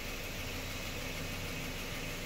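Steady low hum with hiss and no distinct events: background room tone in a garage.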